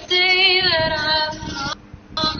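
A woman singing one long held note with vibrato, breaking off shortly before the end.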